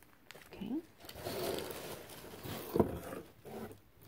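Rustling as a small zip-top plastic bag and craft items are handled and set down, with a sharp tap about three seconds in.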